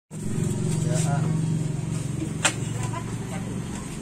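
A vehicle engine running steadily, loudest in the first two seconds and then fading, under indistinct voices, with one sharp click about two and a half seconds in.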